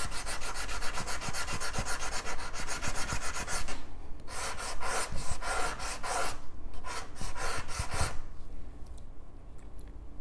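A wet abrasive stick rubbed rapidly back and forth over the fired enamel glass of a silver pendant, hand-grinding it smooth. The fast scraping strokes come in three runs with short pauses between them and stop about eight seconds in.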